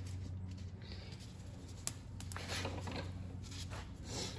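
Faint handling sounds from gloved hands working on the engine: a single sharp click about two seconds in, then soft rustling, over a low steady hum.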